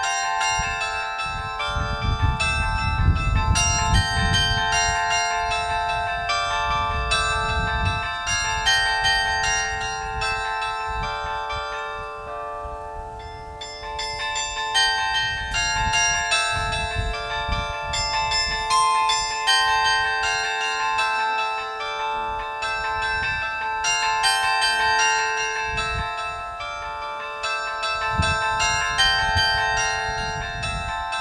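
Bronze bells of a Royal Eijsbouts mobile carillon played from its keyboard: a tune of struck bell notes over long-ringing tones, with a brief lull about twelve seconds in. Bursts of low rumble sit underneath.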